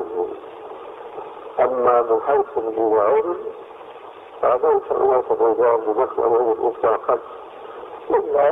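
A man speaking in Arabic in short phrases with pauses between them. The recording is narrow and muffled, like an old tape or radio recording.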